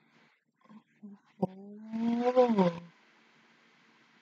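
A woman's wordless, drawn-out vocal sound lasting about a second and a half. It starts suddenly and holds its pitch, rising slightly before falling away at the end, and turns loud and rough in its second half.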